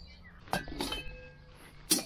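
Stainless-steel lid of a Cobb portable barbecue clinking as it is handled and lifted off, with a short metallic ring, then a sharper, louder knock near the end as it is set down.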